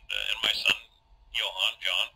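Indistinct voice in short bursts on an old narration tape recording, words not made out.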